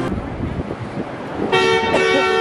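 City street traffic noise, then a car horn sounds a steady blast starting about one and a half seconds in.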